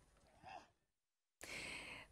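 Near silence, with a faint breath about half a second in, then low room tone in the last half second.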